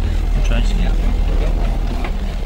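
Steady low engine rumble, with faint indistinct voices in the background.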